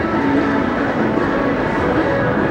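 Steady din of a busy city street, a dense mix of traffic and other urban noise with scattered short tones, holding an even level throughout.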